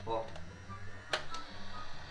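Background music with a steady bass line. About a second in, a sharp click with a fainter one just after comes from an electric Nerf blaster being worked while it holds no darts.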